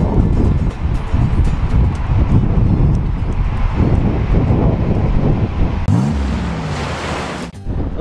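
Wind buffeting the microphone over breaking surf: a loud, steady rush of noise. About six seconds in the sound changes, and a short low hum rises and falls.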